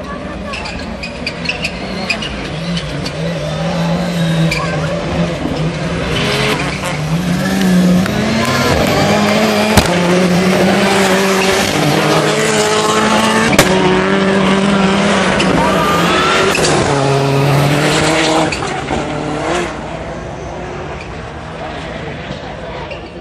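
Rallycross Supercars racing past at full throttle, their engine notes stepping up and dropping with each gear change. The sound builds and is loudest as a car passes close by about halfway through, with two sharp cracks. It falls away near the end.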